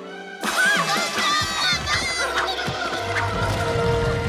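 Cartoon soundtrack music with sound effects: many gliding, squawk-like pitched sounds starting sharply about half a second in. A deep rumble comes in about a second and a half in, the rumbling of a mountain about to erupt.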